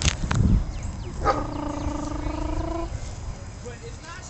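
A person's voice holding one long, steady note for about a second and a half, after some low bumps and clicks at the start.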